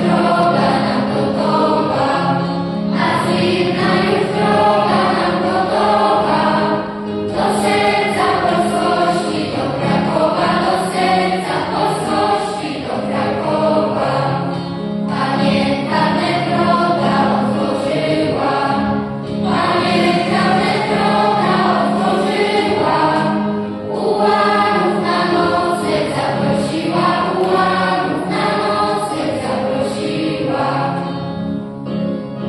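A youth choir singing a song in Polish to electric keyboard accompaniment, the keyboard holding low notes under the voices. The singing comes in phrases of a few seconds with brief pauses between them.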